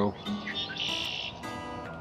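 A red-winged blackbird gives a short buzzy call about a second in, over steady background music.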